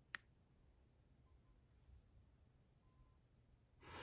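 A single sharp click of a speed control's power switch being pressed on just after the start, then near silence with only faint room tone.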